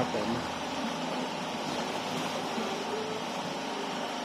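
A dense crowd of catfish thrashing and gulping at the water's surface, making a steady churning wash of splashing water.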